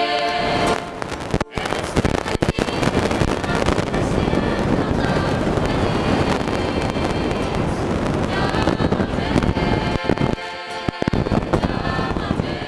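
A mixed church choir singing with guitar, buried for most of the stretch under a loud, dense crackling noise with sharp clicks; the singing comes through clearly again near the end.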